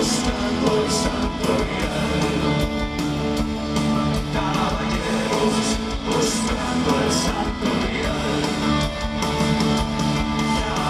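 Live rock band playing loud and steady: electric guitars, bass, drums and keyboards, heard from the audience in a large hall.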